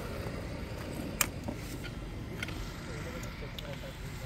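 A few short, sharp clicks over a low steady background, the loudest about a second in; no engine is running.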